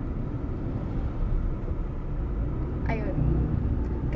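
Car cabin noise while driving: a steady low rumble of engine and tyres on the road, heard from inside the car. A short voice sound comes about three seconds in.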